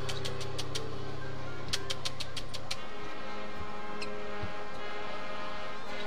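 High school marching band playing its halftime show. A deep held chord sounds under two quick runs of sharp percussion strikes, then cuts off a little before the middle, leaving quieter sustained notes.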